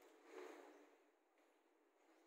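Near silence: faint room sound of a hall, with one soft swell of noise about half a second in that fades away.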